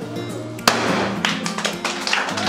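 A hand-held confetti cannon goes off with a sudden pop and rush of air about two-thirds of a second in, followed by scattered handclapping, over background music.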